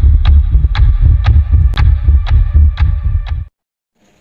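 Edited-in intro sound effect: deep throbbing bass pulses with a sharp tick on each, about two a second, over a steady hum, cutting off suddenly about three and a half seconds in.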